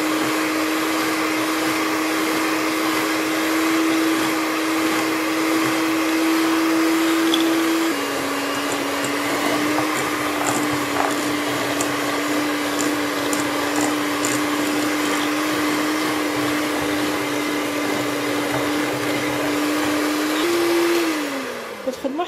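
Kenwood electric hand mixer running steadily, its beaters creaming butter and icing sugar in a glass bowl. The motor's hum steps down slightly in pitch about eight seconds in, rises briefly near the end, then winds down as the mixer is switched off.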